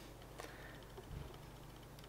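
Near silence: room tone with a faint click about half a second in and a soft low bump a little after a second.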